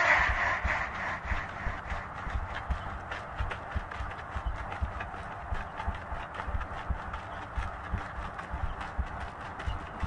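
Rapid, uneven clicking and knocking, many strokes overlapping, with low thuds underneath. It fits a clock's tick-tock or clip-clop percussion stacked several times over in an effects-processed nursery-rhyme track.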